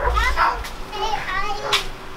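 Children's voices talking indistinctly, with a brief low rumble at the start.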